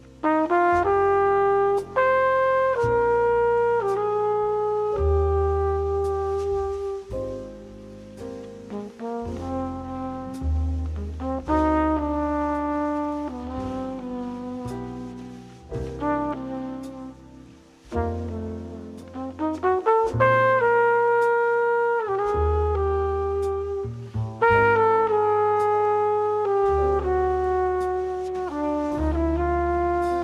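Recorded jazz ballad: a trumpet plays a slow, lyrical melody over a low bass line.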